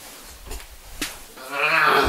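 A couple of light knocks, then a boy lets out a long, loud, wordless groaning yell, starting about one and a half seconds in, as he is dragged out of bed.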